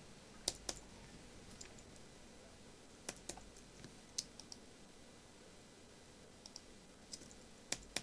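A few faint, scattered keystrokes on a computer keyboard: short sharp clicks, singly or in pairs, spaced a second or more apart.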